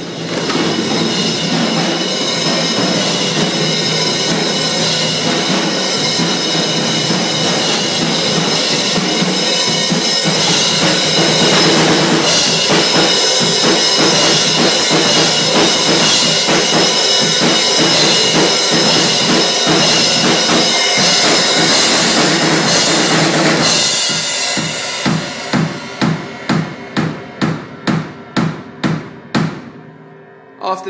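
Acoustic drum kit played loud and full, kick and snare under ringing cymbals. About 24 seconds in the full beat breaks off into a run of single, evenly spaced strikes, roughly two a second, that die away near the end.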